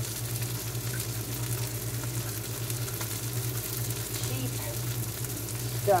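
Flounder fillets frying in a cast-iron skillet: a steady sizzle with a low steady hum beneath it.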